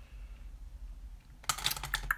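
Quiet room hum, then about a second and a half in, a short quick cluster of clicks and light rattling from small makeup items being handled.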